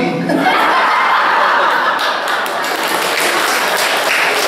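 Audience laughing, with some scattered clapping.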